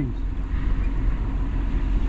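Steady low rumble of a tractor engine running, under an even haze of wind noise on the microphone.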